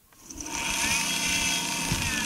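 Small 12-volt DC electric motor running off a solar panel, starting up from near silence and settling into a steady whine with a rising-then-easing higher tone.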